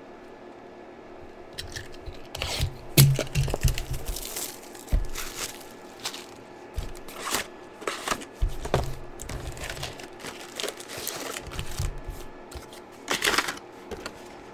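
A cardboard trading-card hobby box being opened and its wrapped packs tipped out and handled: irregular tearing and crinkling with a few soft knocks.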